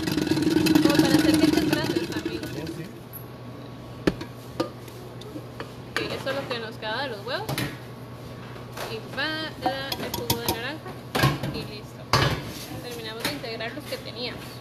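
Knocks and clinks of kitchen utensils against a mixing bowl while cake batter is being mixed, with a louder, noisier stretch in the first few seconds and faint voices in between.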